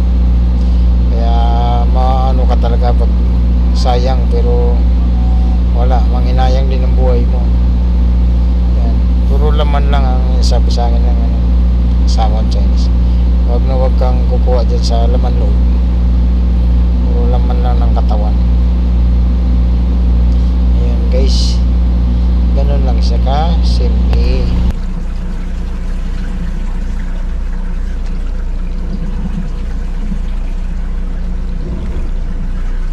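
Voices over a steady low motor hum, both cutting off abruptly about 25 seconds in, leaving a quieter background.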